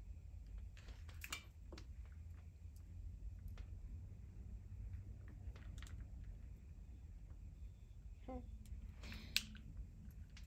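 Scattered light clicks and handling noises as a flat iron and hair clips are worked through a short wig's bangs, with one sharper click near the end, over a low steady hum.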